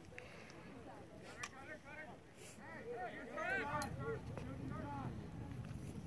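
Distant, indistinct shouting and calling of voices across an open field, loudest in the middle, over low wind rumble on the microphone. A few sharp clicks sound now and then.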